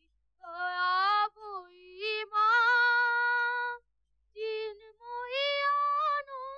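A high, wavering, wordless wail in a few long held notes, starting about half a second in, with short breaks between notes.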